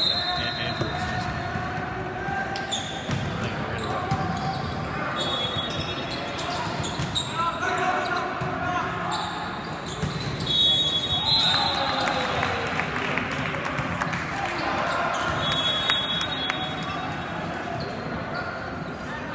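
Volleyball being served, hit and bounced on a hard gym court, with many short impacts amid the chatter of players and spectators in a large echoing hall. Several short high-pitched squeaks come at intervals.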